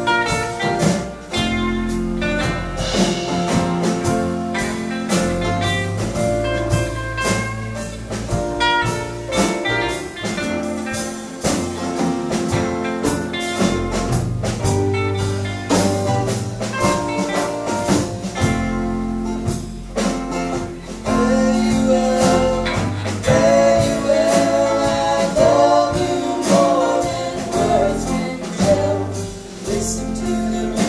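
Live band playing a slow ballad with acoustic guitars, drums, keyboards and bass, with singing over it.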